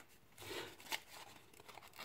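Faint rustling and crinkling of a folded paper fortune teller handled in the fingers, with one short click about a second in.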